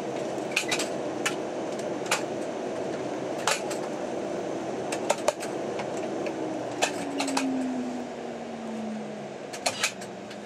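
Dash 8-300's Pratt & Whitney PW123 turboprop engine and propeller winding down after shutdown, heard from inside the cabin: a steady hum with a whine that falls in pitch from about six seconds in as the sound fades. Sharp clicks and clatters sound in the cabin throughout.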